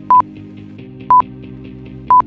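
Two short, high electronic beeps about a second apart from a workout interval timer counting down the last seconds of an exercise, over background music.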